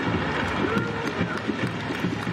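Football stadium ambience right after a shot hits the post: a man's drawn-out voice with no clear words, over steady crowd noise and many sharp claps.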